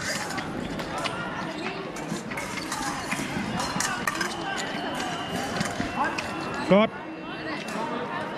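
Épée fencing bout: quick clicks and knocks of blades and feet on the piste over hall chatter, then, about three-quarters of the way in, a short loud cry that rises in pitch.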